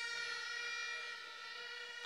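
A steady held pitched tone with several overtones, easing off slightly about a second and a half in.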